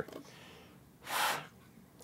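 A single short breath, a rushing exhale or sniff about a second in, between otherwise quiet moments.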